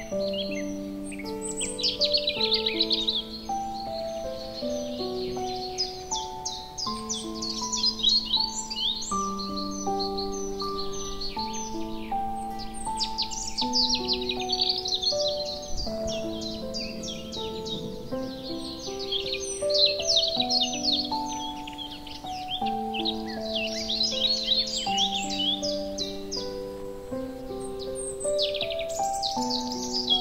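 Slow, calm piano music with recorded songbirds layered over it: many quick, high chirps and trills coming in busy clusters.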